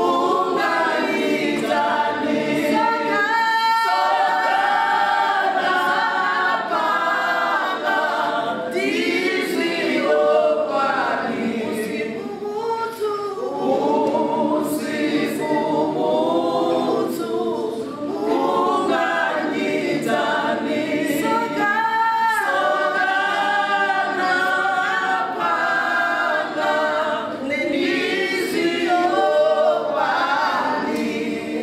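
A small group of women singing together a cappella, in sustained phrases without instrumental accompaniment.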